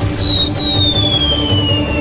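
A hand-held signal rocket firing into the sky with one long whistle that falls steadily in pitch, over background music.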